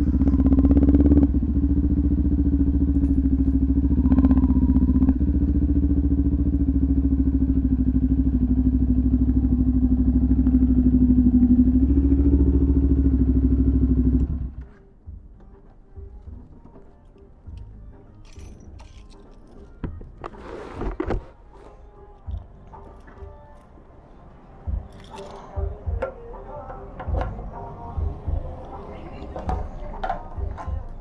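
Kawasaki Ninja 400's parallel-twin engine idling steadily, then switched off about halfway through, the sound cutting off suddenly. Afterwards only faint scattered clicks and rustles.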